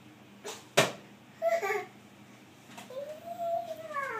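A sharp knock a little under a second in, then a toddler's short vocal sound and a long drawn-out vocal sound that rises and falls in pitch.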